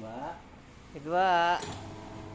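Sinmag SM-201 20-litre planetary mixer running with an empty bowl while its speed lever is shifted, a low motor hum under a loud spoken word; near the end a steadier hum with a few clear tones settles in as the mixer runs at the new speed.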